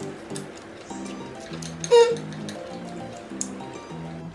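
Light background music with a steady run of notes, over which instant noodles are slurped from chopsticks, with one loud, short, rising slurp about two seconds in.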